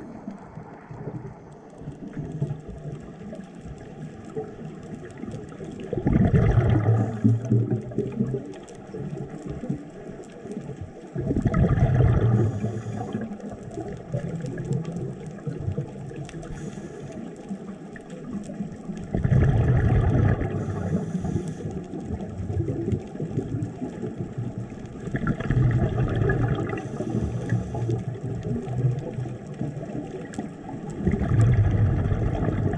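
A scuba diver breathing through a regulator, heard underwater: four bursts of exhaled bubbles, each a second or two long, about every six to seven seconds, with a quieter wash of water between.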